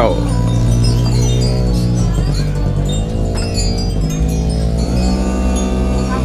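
Wind chimes ringing, scattered short high metallic notes, over sustained low tones that change pitch about once a second.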